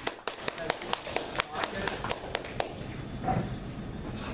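Sparse applause: a few people clapping, about four or five claps a second, over background talk, dying out about two and a half seconds in.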